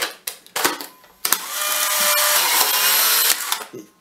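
A few plastic clicks as the Polaroid 1000's film door is snapped shut. About a second in, the camera's motor whirs steadily for about two seconds, ejecting the black cardboard dark slide from the freshly loaded film pack.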